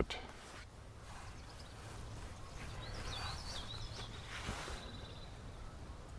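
Outdoor ambience: a steady low wind rumble on the microphone, with a small bird chirping a quick run of high notes in the middle.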